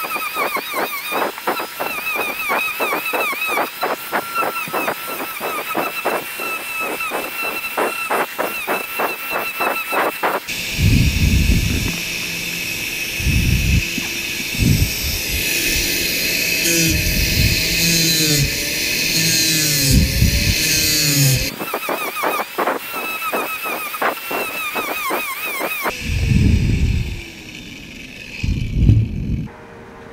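Hand-held DeWalt angle grinder with an abrasive disc shaping the scalloped edge of a piece of pallet wood. Its high motor whine wavers and dips in pitch as the disc is pressed into the wood, over a fast rasping of the disc on the grain. Through the middle the sound turns rougher, with heavy low thumps.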